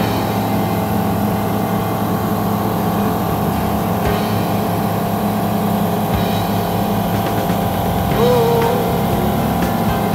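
Steady drone of a Flight Design CTLS's Rotax four-cylinder engine and propeller in cruise, heard inside the cockpit. A short wavering tone sounds briefly near the end.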